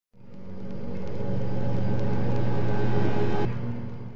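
A low, rumbling drone with steady tones that swells in over the first second and a half, drops sharply about three and a half seconds in, then fades out.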